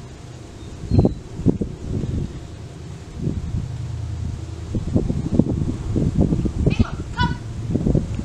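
Wind buffeting the microphone in uneven gusts, a low rumble. A short high honking call comes about seven seconds in.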